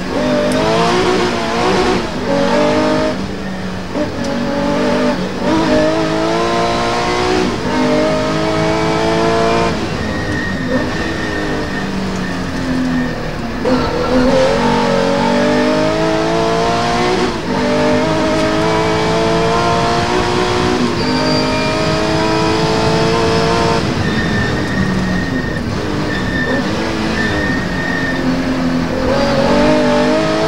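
Porsche 911 rally car's flat-six engine heard from inside the cabin, driven hard: the pitch climbs through each gear and drops back at every upshift, a couple of seconds per gear. A few deeper dips come where the car slows and the engine is pulled down before climbing again.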